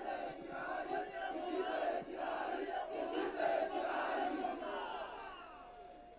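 A large rally crowd's many voices calling out together in response to the speaker, fading away near the end.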